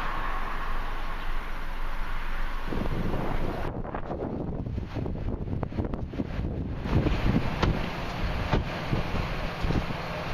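Wind buffeting the microphone in irregular gusts, mostly in the second half, over a steady rush of road traffic.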